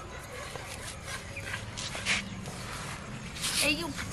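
A puppy whimpering, with a short high whine near the end.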